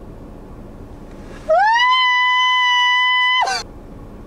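A man's high-pitched falsetto scream, gliding up and then held on one steady note for about two seconds before dropping away.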